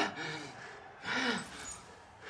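An injured woman's pained groans and laboured breathing: two short moans about a second apart.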